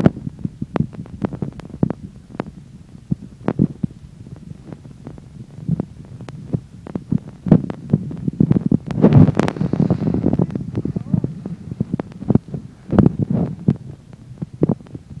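Wind buffeting the microphone outdoors on a ski slope: a low rumble broken by frequent irregular thumps, with a louder hissing gust about nine seconds in.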